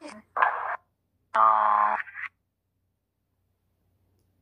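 A woman's voice: a brief 'okay' near the start, then a held, steady hum-like tone about a second and a half in that lasts well under a second.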